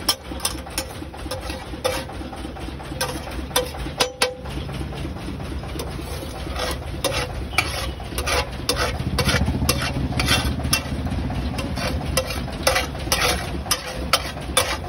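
Flat metal spatula clacking and scraping irregularly on a large flat tawa as pav bhaji is mashed and stirred, with the mixture sizzling. A steady low engine-like rumble runs underneath, louder in the middle.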